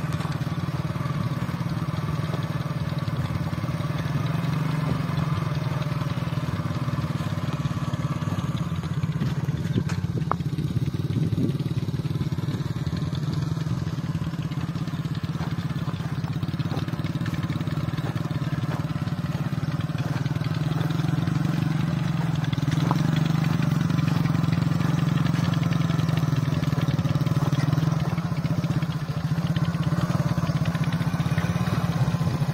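Small motorcycle engine running steadily at low speed while towing a hand-steered hoe through field soil. It grows a little louder in the last third.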